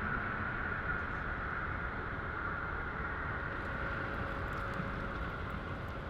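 Steady low rumbling drone with a faint hum above it, unchanging throughout: the installation's dark-room soundscape of muffled city sounds and amplified web vibrations.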